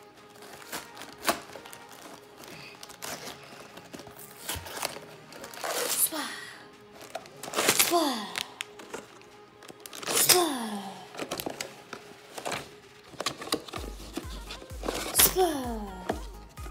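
Plastic bags of LEGO bricks and the cardboard box crinkling, rattling and tapping on a wooden table as they are unpacked, under background music with several falling tones; a low beat comes in near the end.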